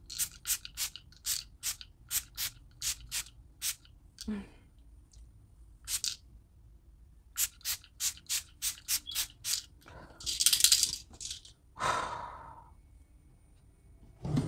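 A pump-action bottle of Too Faced Peach Mist setting spray misted over the face: quick short spritzes, about three or four a second, in two runs with a single one between, then a longer hiss and a breath near the end.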